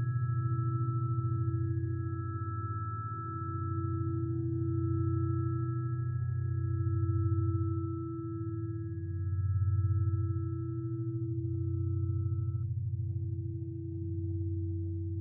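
Sustained meditation tones: a low hum that slowly swells and fades every two to three seconds under a steady middle tone and two higher ringing tones, the higher tones dying away near the end. Faint ticks come in during the second half.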